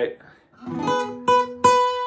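Acoustic guitar, a single note picked three times, the last ringing on. It is the 2 of the key of A (B), played over the five chord of the blues in place of the natural seventh, to bring out the chord change without sounding abrupt.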